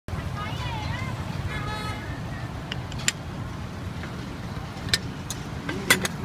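Steady low rumble of street traffic with distant voices, and a few sharp clicks about three, five and six seconds in.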